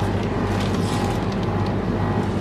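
A steady low hum over a faint, even background noise, with no sudden sounds.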